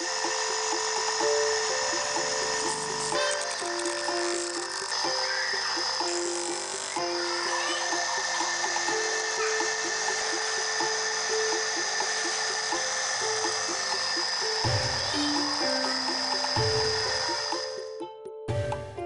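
Electric motor with a sanding disc on its shaft running steadily, a continuous noise with steady high tones, under background music with a stepping melody.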